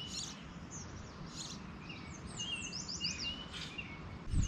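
Wild birds chirping, with a run of quick falling whistled notes about two and a half seconds in, over faint steady outdoor background noise.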